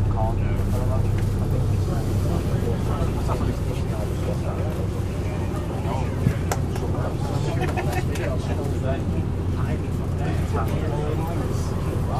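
Cummins diesel engine of a Volvo Olympian double-decker bus running with a steady low drone, heard from the upper deck, with one sharp knock about six seconds in.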